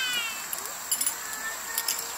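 Thin metal wire tent pegs clinking together in a hand, in two short bursts about a second apart. At the start, a long drawn-out call falls away in pitch and ends.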